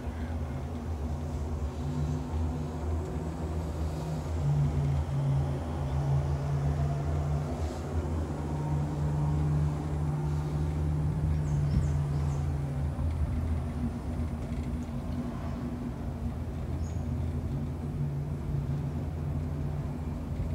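Steady low humming rumble inside a moving cable-car gondola, swelling a little in the middle.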